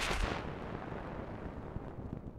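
Crackle and hiss of a stylus riding a 1909 shellac 78 rpm disc as the turntable spins down, the noise sinking in pitch and fading as the record slows to a stop.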